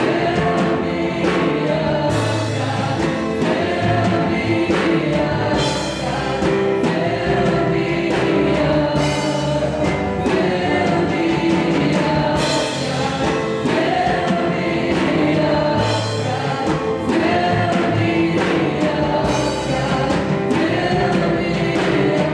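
A church worship team singing a gospel song through handheld microphones, a woman's voice leading with other voices joining, over amplified music with a steady beat.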